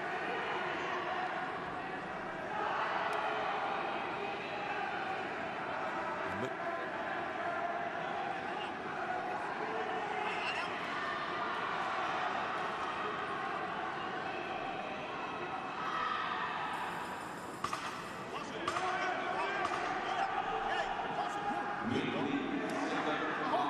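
Ringside sound of an amateur boxing bout: voices calling out in the hall, with occasional thuds of gloved punches and footwork on the canvas.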